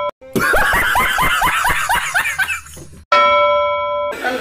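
Edited-in comedy sound effects. A sustained chime tone cuts off abruptly, then comes a run of rapid laughter-like 'ha-ha' calls, about five a second for two and a half seconds. The same chime then starts again abruptly near the end.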